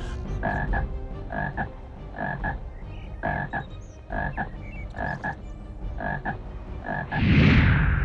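A frog croaking over and over, short calls about once a second. Near the end comes a loud rushing whoosh as a puff of smoke bursts up.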